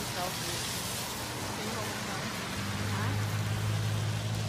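Steady hiss and rumble of a car heard from inside the cabin, with a low hum that grows louder about two and a half seconds in. Faint voices murmur underneath.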